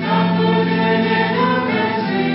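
A children's group singing a church hymn in long held notes. A new phrase begins right at the start and the notes change again near the end.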